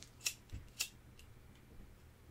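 A few short, sharp clicks in the first second, with a soft low thump between them, over faint room tone.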